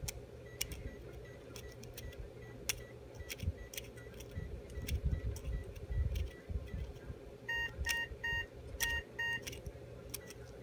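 Short electronic beeps in quick groups of two or three near the end, over a steady low hum. Light clicks and scrapes run through it as a hand curette works tartar off a dog's teeth under the gum line.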